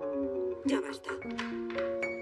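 Background music: a light melody of held notes stepping from one pitch to the next.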